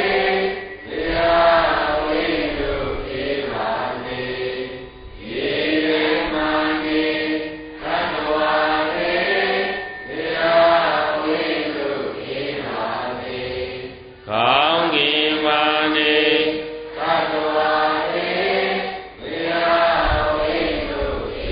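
Buddhist devotional chanting: sung phrases of two to four seconds each on held notes, separated by short breaks, with the pitch sliding up into some phrases.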